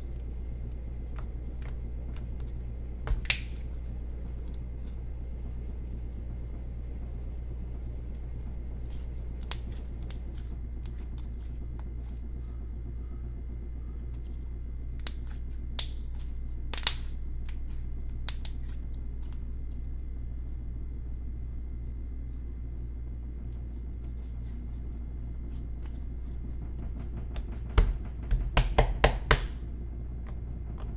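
Glitter slime being poked, pressed and squeezed by hand, giving sharp pops and clicks every few seconds and a quick run of pops near the end, over a steady low background hum.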